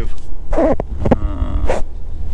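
Low steady rumble inside a BMW i8's cabin as the car creeps to a stop, with a man's short hesitation sounds over it.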